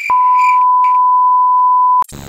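Steady, loud electronic test-tone beep of a TV colour-bars screen, one unchanging pitch held for about two seconds and cut off abruptly. It starts just after a short glitch click.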